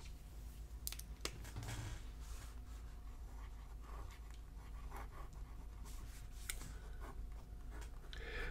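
Geha 714 fountain pen with a steno nib writing on paper: faint, soft scratching of the nib in short strokes, with a few light clicks near the start.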